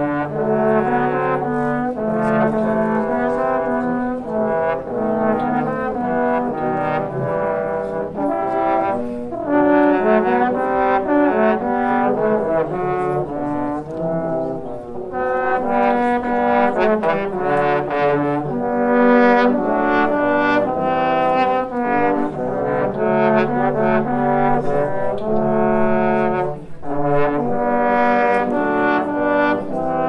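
Trio of trombones playing a piece together, several notes sounding at once in harmony and the notes changing continually.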